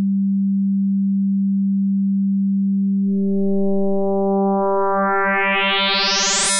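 A pure, low sine tone from the Serum software synthesizer, held steady. From a little past two seconds in, more and more upper harmonics appear and climb as frequency modulation from a second sine oscillator is turned up, so the tone grows steadily brighter.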